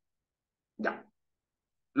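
Near silence on gated video-call audio, broken about a second in by one short voice sound from a man, a brief syllable or mutter.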